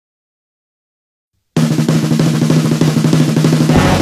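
Dead silence, then about one and a half seconds in a rock song starts with a fast snare drum roll over a held low note. The full band comes in with a steady beat near the end.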